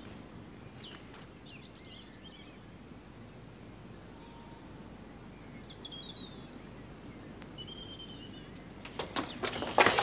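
Quiet outdoor background with scattered short bird chirps. About a second before the end, footsteps of several people start and grow louder.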